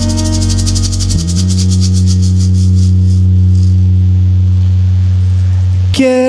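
A live acoustic rumba band playing an instrumental passage: acoustic guitar over a long held bass note that comes in about a second in, with a quick shaker rhythm that fades out about halfway through.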